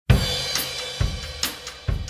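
A drum-kit beat opening a song: a crash of cymbal with the bass drum at the start, then bass drum and snare alternating steadily, a little under one second per bass-drum stroke.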